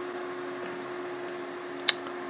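A power switch clicking once, sharply, near the end, as power is applied to the boost converter, over a steady electrical hum from the bench.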